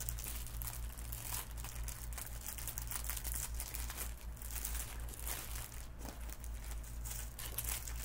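Plastic packaging crinkling in irregular bursts as it is handled and rummaged through.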